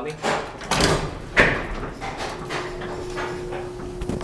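A 1911 Otis traction elevator starting off after its lobby button is pressed: two clunks and rattles of its machinery in the first second and a half, then a steady hum as the car travels.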